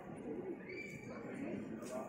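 Low, repeated cooing calls of a dove, with a brief higher chirp a little under a second in.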